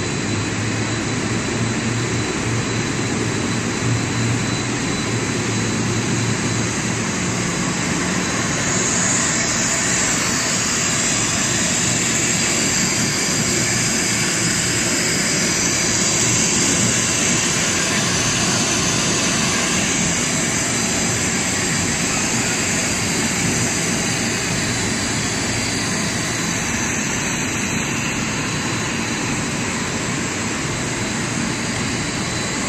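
Rubber hose production line machinery running: a loud, steady mechanical rushing noise with a faint, thin high whine held throughout.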